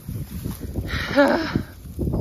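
Wind buffeting the microphone. About a second in comes a short rustle of dry straw and wheat stubble as a hand reaches down into it to grab a clump of wet mud, with a brief vocal sound in the middle of it.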